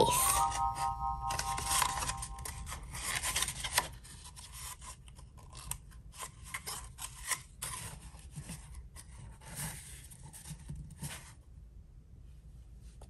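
Cardboard paper towel roll being bent and folded by hand, crinkling and scraping in quick irregular rustles and creaks that die away about eleven seconds in. A brief held electronic chord sounds at the very start.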